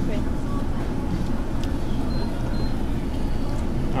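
Steady low rumble of restaurant room noise and the exhaust hoods over the tabletop grills, with a few faint clicks of chopsticks on dishes. Two short high beeps sound near the middle.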